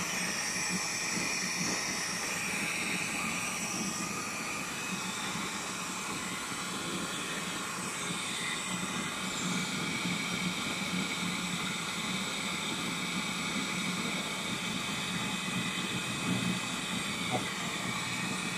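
Servo-driven film slitting and rewinding machine running at a steady speed: a low hum with several high whining tones over a hiss.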